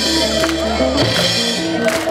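Live band playing loudly: electric guitar riff over bass and drums, with a dense cymbal wash that cuts out near the end.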